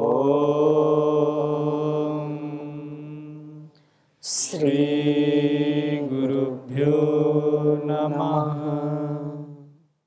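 A single voice chanting a closing mantra, 'Om shanti', in three long held notes. The first is a long 'Om' that closes down to a hum, and the next two each open with a short 'sh' hiss.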